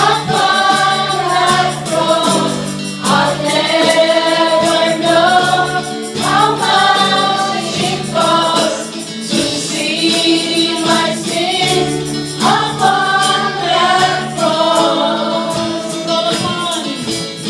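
Live worship song: several women singing together, backed by a small band of acoustic and electric guitar, keyboard and cajón, with a steady percussive beat.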